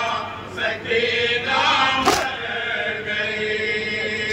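A group of men chanting a noha, a Shia lament for Imam Hussain, in unison. About halfway through comes one sharp slap, the beat of matam (chest-beating) kept in time with the lament.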